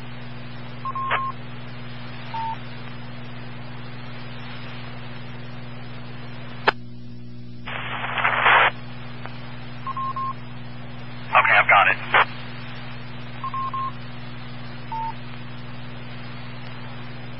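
Scanner audio of a 2-metre amateur radio repeater with no one talking: a steady hum under hiss, several short beeps at two slightly different pitches, a sharp click about seven seconds in, and two brief bursts of static at about eight and eleven and a half seconds as the channel is keyed.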